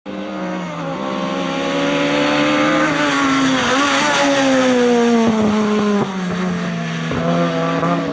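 VW Golf GTI hillclimb race car engine at high revs, its note falling steadily about halfway through and dropping suddenly near 6 s as the car slows for a bend, with a few sharp cracks around then.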